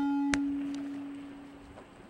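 A steady low hum with faint higher overtones, fading away over about two seconds. A single click comes about a third of a second in.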